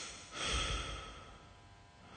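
Slow, heavy human breathing close to the microphone. One long breath, with a puff of air on the mic, comes about a third of a second in and lasts most of a second; the next breath begins near the end.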